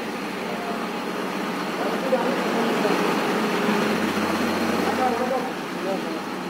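Truck-mounted borewell drilling rig running: a steady mechanical din that grows louder about two seconds in and eases near the end.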